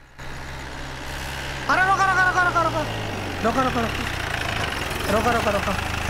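Jeep engine running steadily as the vehicle drives, with a low hum throughout. A man's voice cuts in over it in short stretches from about two seconds in, louder than the engine.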